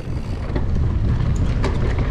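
Wind buffeting the microphone over the rumble and rattle of a Scott Spark RC mountain bike riding fast down a dirt forest trail, with a few sharp clicks of the bike over the ground in the second half.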